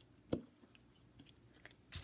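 Glue stick being opened: one sharp click as the cap comes off, then a few faint ticks of the stick being handled.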